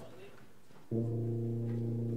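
Low brass instruments holding one steady low note, which stops and then comes back in sharply about a second in.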